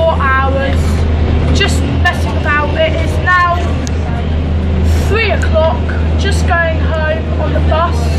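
A boy talking over the steady low drone of a bus engine, heard from inside the passenger cabin.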